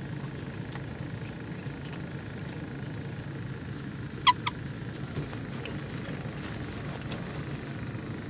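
Quiet chewing and small clicks of someone eating, over a steady low hum, with one sharp squeak about four seconds in.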